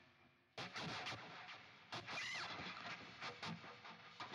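Ibanez JEM 777 electric guitar with DiMarzio Evolution pickups, played through a Fractal Audio AX8 amp modeler on a heavily distorted patch. A quick burst of scratchy, noisy picked notes starts about half a second in, with a short rising-and-falling squeal of a bend around two seconds in.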